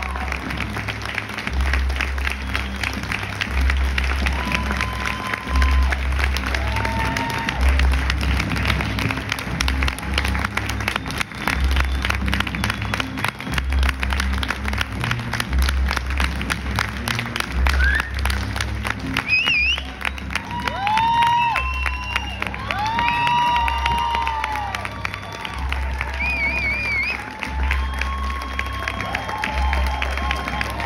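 Audience applauding continuously through a curtain call, over music with a pulsing bass beat. From about two-thirds of the way through, whoops and calls rise above the clapping.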